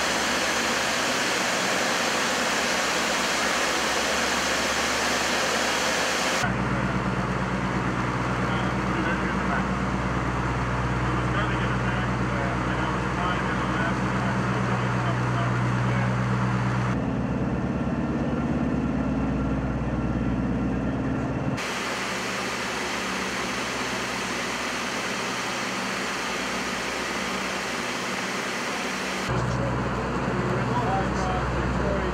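Douglas DC-7's Wright R-3350 radial piston engines and propellers running steadily in flight, heard from inside the aircraft as a loud, constant drone with a low propeller hum. The tone and the strength of the hum change suddenly a few times, and the hum is strongest through the middle and again at the very end.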